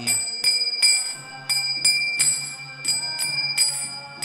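Kirtan accompaniment between sung lines: small brass hand cymbals (kartals) struck in a steady rhythm of about three strokes a second, ringing over a steady low drone.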